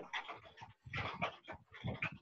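A dog panting faintly in a few short, breathy bursts, picked up by a video-call microphone.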